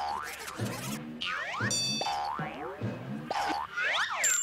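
Comic cartoon underscore: a string of quick rising pitch glides over low bass notes, with a brief bright chime about two seconds in.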